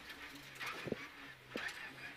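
Renault Clio Rally5 rally car's engine heard inside the cabin, running low and steady with breaks in its note, with a couple of sharp knocks.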